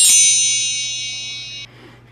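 A bright, shimmering chime sound effect: a cluster of high ringing tones that rings out at once, fades over about a second and a half, then cuts off.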